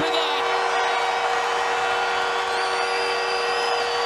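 Arena goal horn blaring a steady, held chord over a cheering crowd, sounded for a home-team goal. A high, thin whistle joins in about two and a half seconds in.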